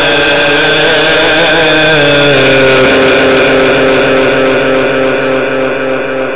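Quran reciter's amplified voice holding one long note over a loudspeaker system, with a strong echo. The note drops to a lower pitch about two seconds in and is then held steady.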